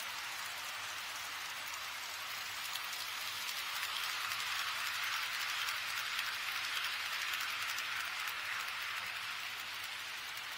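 HO-scale model trains rolling on KATO Unitrack: a steady, hiss-like rolling noise of small wheels on the rails, growing a little louder in the middle as a train passes close by.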